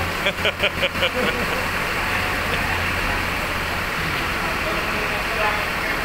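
Diesel bus engine idling steadily, a low hum under a constant wash of terminal noise.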